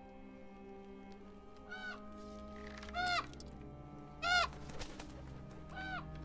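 Soft held music chords with four short bird calls over them, each rising and falling in pitch, spaced a second or so apart.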